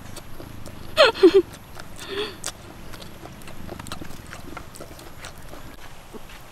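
A woman's short wordless vocal sounds of enjoyment while eating raw garlic: a quick sliding exclamation about a second in, the loudest sound, and a shorter one about two seconds in. Faint clicks of chewing and of peeling garlic cloves fill the rest.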